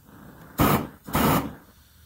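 GrillGun propane torch burning with a low hiss, then two loud surges of flame roar, each about a third of a second, as the hand grip is squeezed to open up the flame.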